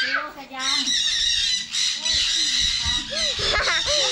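Many caged birds in an aviary chirping and calling, a dense steady chatter with louder rising and falling calls over it.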